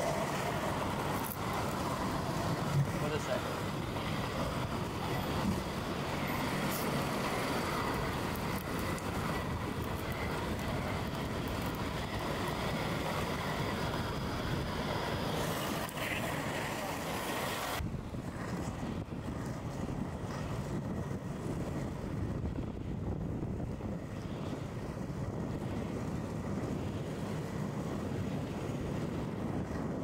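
Inline skate wheels rolling over city asphalt, a steady rough rumble, with street noise around it. About two-thirds of the way through, the high hiss drops away and the sound turns duller.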